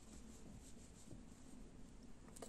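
Near silence with a faint rustle of fingers pulling soft chenille loop yarn through its loops in hand knitting.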